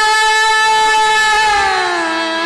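A woman's voice singing the opening alap of a thumri in Raag Mishra Des: one long held note, sliding down in pitch near the end.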